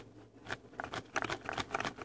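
Folded paper of an origami flasher tessellation crackling and rustling as it is pulled open. A run of small crinkly clicks grows denser about halfway through.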